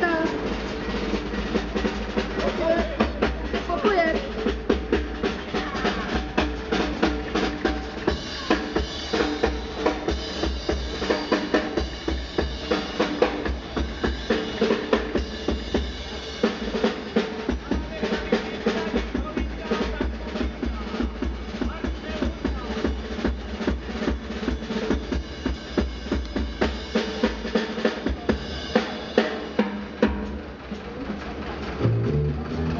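Band music with a drum kit keeping a steady beat over steady instrumental tones.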